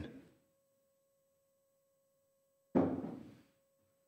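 Mostly near silence with a faint steady tone underneath, broken about three seconds in by a single dull knock that rings out briefly.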